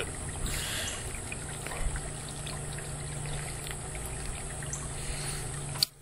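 Steady trickling water noise with a low steady hum underneath, cutting off abruptly near the end.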